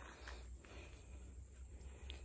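Near silence: faint outdoor background with a low, steady rumble.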